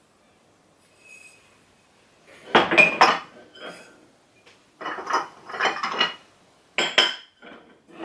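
Glass and ceramic dishes clinking and knocking against each other as they are handled in a cardboard box. The clatter comes in three bursts, starting about two and a half seconds in.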